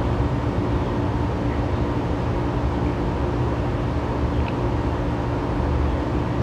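A steady low background hum with a few level droning tones, unchanging throughout.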